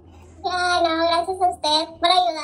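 A young child singing in a high voice, two short phrases of held, sliding notes that start about half a second in, with a brief break near the end.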